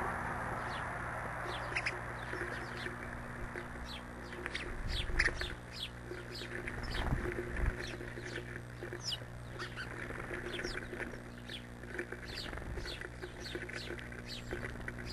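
Small songbirds chirping busily: many short, quick, descending chirps, several a second and overlapping, over a steady low hum.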